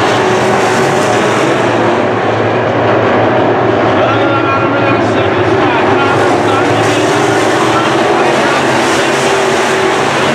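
A field of sport modified dirt-track race cars racing together: a loud, steady engine drone with some engine pitches rising and falling as cars pass and throttle around the oval.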